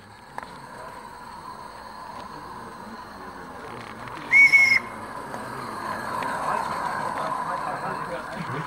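A garden-railway steam locomotive's whistle sounds once about four seconds in, a single steady high tone lasting about half a second, over steady background noise.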